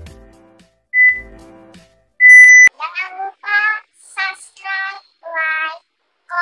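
Music fades out, then a short electronic beep about a second in and a loud half-second beep a little later. After that come five short, high-pitched, meow-like vocal calls in quick succession.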